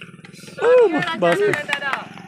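A man shouting loudly in several short calls, starting about half a second in, over the low steady running of a small engine.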